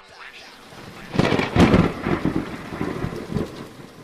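A thunder-and-rain sound effect. A loud rumbling crash breaks in about a second in and rolls on in uneven swells over a rain-like hiss.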